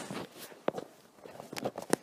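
A few light, irregular knocks and clicks, about four spread across two seconds.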